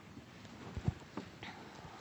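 A few faint, scattered knocks and rustles of people shifting in a quiet room, over a low background hiss, with one sharper knock near the middle.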